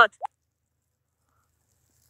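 Silence, after the end of a spoken word and one short faint blip just after it.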